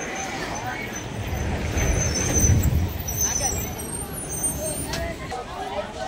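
A road vehicle passing, its low rumble swelling to a peak about two and a half seconds in and then fading, with people's voices around it.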